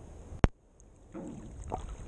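Water sloshing and lapping against a waterproof action-camera housing at the surface, with one sharp knock about half a second in and a brief hush after it before the sloshing returns.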